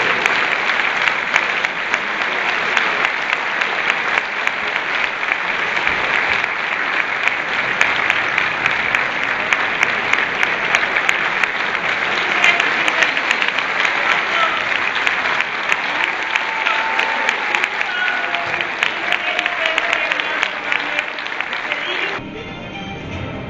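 A large audience applauding: dense, steady clapping that starts abruptly and keeps up throughout, with a few voices faintly heard over it in the latter part.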